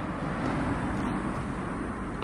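Steady outdoor background noise, a low rumble with hiss and no distinct events.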